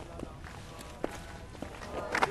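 A few soft footsteps, three faint knocks spread over two seconds, over a low background hum.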